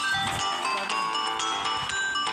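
Zuma-style marble-shooter mobile game audio: background music layered with many short chiming sound-effect tones as marbles match and a combo scores.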